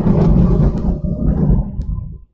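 A loud, low rumbling dramatic sound effect played through the PA speakers, fading out at the very end.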